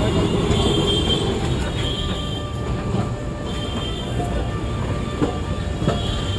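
Kolkata electric tram car rolling past close by on street rails, steel wheels grinding with faint high squeals that come and go.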